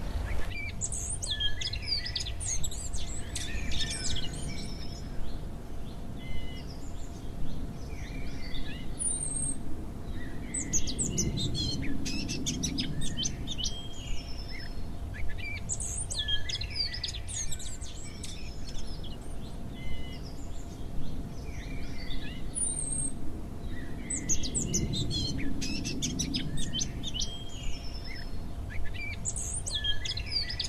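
Songbirds singing and chirping, several overlapping songs in bursts of a few seconds with short lulls, over a faint steady hum and a low rumble that swells twice.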